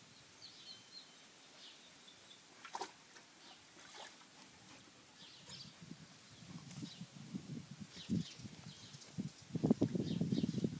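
Stabyhoun dogs scuffling and snuffling close by, quiet at first, then building up through the second half, with the loudest bursts just before the end. Faint bird chirps come through in the first few seconds.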